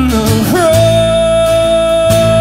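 Live acoustic music: a man sings a long held note over a strummed acoustic guitar and a plucked upright bass. His voice slides up about half a second in and then holds one steady note.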